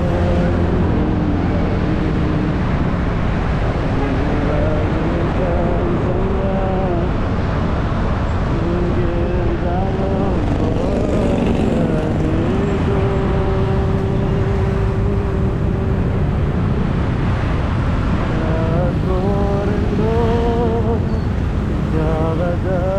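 A man singing as he rides a motorcycle, with long held notes, one of them held steady for a few seconds in the middle, and a short break late on. Under it runs the steady rumble of the motorcycle and road traffic.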